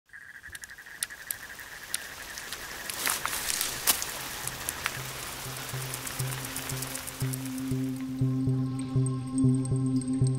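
An insect trilling steadily, with scattered sharp clicks and crackles over a soft hiss. About halfway in, a music score takes over: a low pulsing note repeating about twice a second, under sustained tones that build and grow louder.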